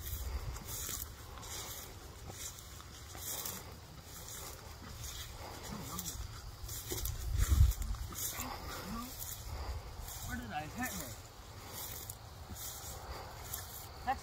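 Grass rustling and brushing as a dead deer is handled in a field, with low wind rumble on the microphone that peaks about halfway through and faint, indistinct voices.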